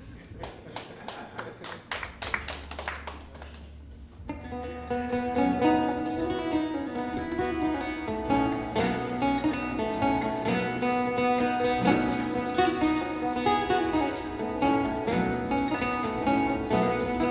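Live acoustic band: a few sparse percussive taps, then about four seconds in two acoustic guitars and the rest of the band come in together and play on.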